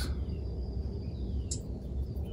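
Outdoor background noise: a low, steady rumble with one light click about one and a half seconds in.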